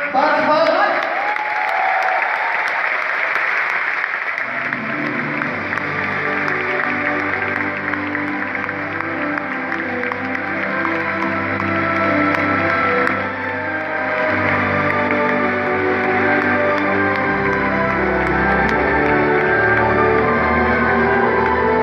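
Audience applauding, with music coming in about four seconds in and carrying on as the clapping fades; a deeper bass joins near the end.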